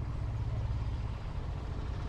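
Engines of a line of tractors running steadily as they drive along the road, a low continuous rumble.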